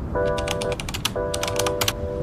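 Typing sound effect: a quick, irregular run of key clicks, over soft background music holding sustained chords.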